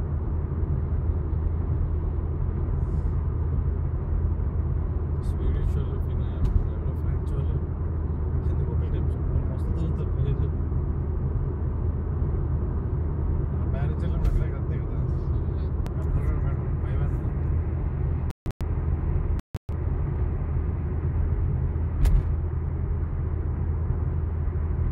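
Steady low road and engine noise of a car cruising, heard from inside the cabin. The sound cuts out briefly twice, about three quarters of the way in.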